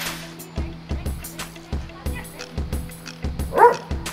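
Background music with a steady beat, and a dog gives one short, loud bark near the end.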